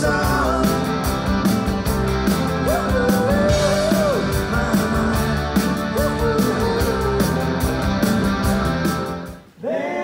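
Live rock band playing: electric guitars, a drum kit with a steady cymbal beat, and a lead vocal. Near the end the band music cuts off abruptly and several male voices start singing in close harmony without instruments.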